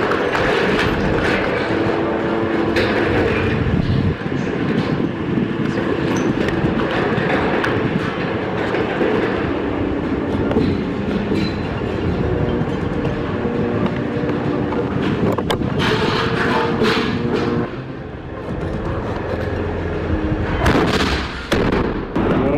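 Heavy tracked armoured vehicle running close by, its engine droning with the clatter of its tracks, and a loud blast near the end.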